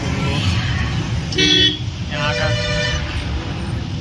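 Vehicle horns sounding from road traffic: a short, loud toot about a second and a half in, then a longer steady blast lasting about a second, over a constant low rumble.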